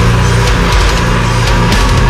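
Loud heavy rock music from a band.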